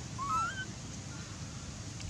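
A baby macaque's short squeaky call, about half a second long, its pitch bending up and down just after the start. A steady low rumble of background noise lies underneath.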